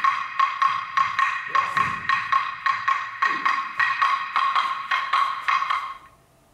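Dance music with a sharp wooden clapping beat, about four strokes a second, over a held high tone.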